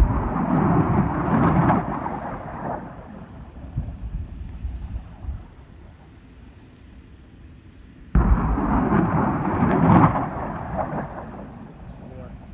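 M142 HIMARS rocket launcher firing two rockets about eight seconds apart. Each launch starts suddenly with a blast, and the rocket motor's rushing noise carries on for two to three seconds before fading.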